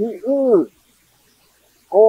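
A man's voice: one short spoken phrase with a rising and falling pitch at the start, then a pause of about a second before he speaks again.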